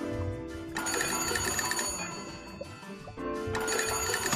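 Cartoon sound effect of an old-fashioned telephone bell ringing twice, the first ring starting about a second in and the second near the end, over background music.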